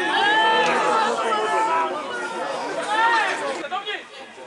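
Several voices shouting and talking over one another, with a brief dip just before the end.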